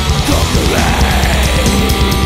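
Thrash/death metal studio recording: distorted guitars and bass over fast, dense drumming, with cymbal strikes at a quick, even rhythm and a pitched line sweeping up and down in the middle range.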